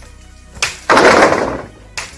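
A sharp knock, then a loud crashing noise a quarter second later that lasts most of a second, from bamboo being cut and crashing in the grove, over background music.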